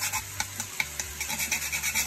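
Whole nutmeg being grated on a fine rasp grater: quick, repeated scraping strokes, several a second, with a short lull under a second in before the strokes pick up again.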